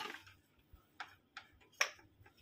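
A few sharp clicks of small hard objects being handled: one about a second in and a louder one near the end.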